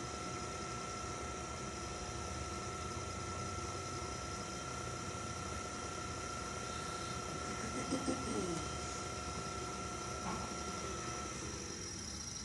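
Electric potter's wheel running with a steady motor whine while a metal trimming tool shaves clay from the foot of a bowl; the whine stops shortly before the end.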